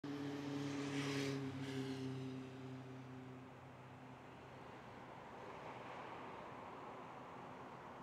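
A low engine hum, loudest at first, fades away over the first three or four seconds, leaving a faint steady rushing noise.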